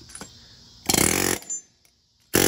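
Pneumatic impact wrench firing one short burst of about half a second, about a second in, followed by a brief blip.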